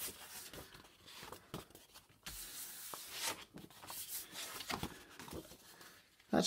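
Faint paper rustling and rubbing as a hand presses a sheet of paper down onto a paint-covered gel printing plate and then peels the print away from the plate.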